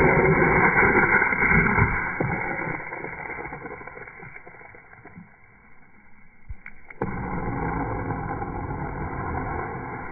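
Rushing jet of water and compressed air blasting from a water rocket plane's nozzle at launch, dull and muffled, fading over several seconds. About seven seconds in, the same rushing starts again abruptly and fades.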